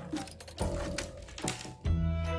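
Background music, with a few clicks and knocks of an old plastic laptop being handled and lifted off a wooden tabletop.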